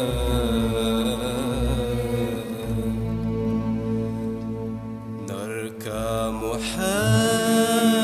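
Music from a 1977 Algerian song: an instrumental passage of held, wavering melodic notes over a steady low drone. A sliding glide in pitch comes a little past the middle, and a new phrase of bending notes starts near the end.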